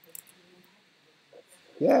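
Quiet room tone with faint distant voices and a couple of brief clicks, then a voice says "yeah" near the end.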